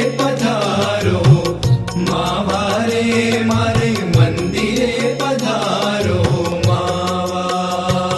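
Indian devotional bhajan music: a wavering melodic lead over a steady low drone, with a regular percussion beat.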